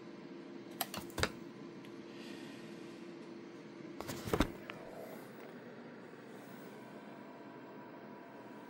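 Handling clicks and knocks from a handheld thermal camera multimeter being worked on: a few sharp clicks about a second in, and a louder cluster of clicks and knocks around four seconds in, over a faint steady hum.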